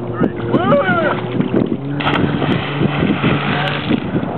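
Motorboat engine running with a steady hum. About two seconds in, a loud rushing noise of wind and water sets in suddenly.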